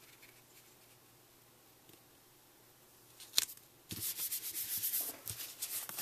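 Sheets of patterned cardstock sliding and rubbing against each other and the base paper as they are handled into place, starting about four seconds in after a single sharp tick.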